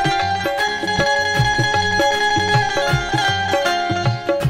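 Instrumental devotional music: a held melodic line over a steady low drum beat.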